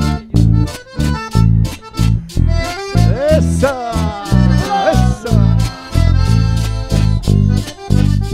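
Live dance-band music led by accordion, with a steady bass beat about twice a second under the melody.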